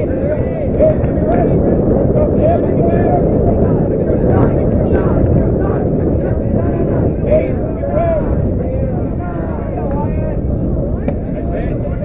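Muffled voices and calls from players and spectators over a steady low rumble.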